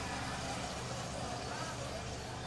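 Steady background noise with a constant low hum, over which faint, distant voices come and go.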